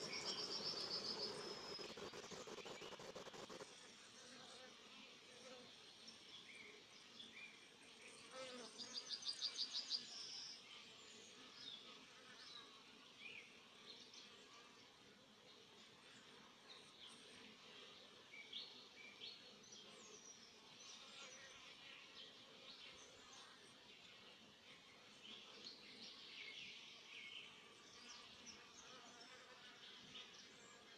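Honey bees buzzing around an open hive for the first few seconds. After that comes a quiet outdoor background with scattered short high chirps and one rapid, high-pitched trill lasting about a second and a half, about nine seconds in.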